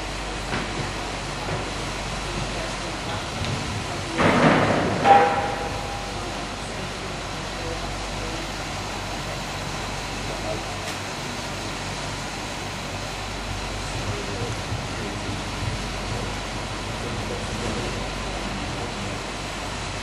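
Steady background rumble of a large indoor riding arena, with a brief burst of a person's voice about four to five seconds in.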